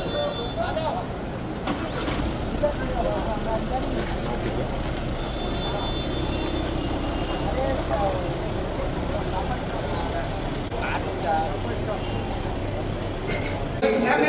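A car's engine running steadily at low speed, with scattered voices of people around the car.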